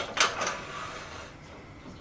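A metal lathe tool rest being set into the banjo of a wood lathe: two sharp clanks close together, then a short metal-on-metal scraping slide that fades out within about a second.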